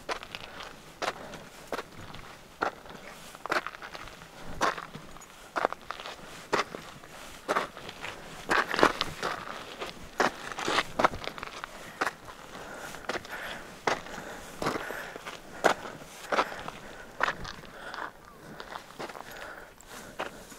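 Hiking footsteps crunching on a dirt trail strewn with loose stones, a steady walking pace of about one step a second.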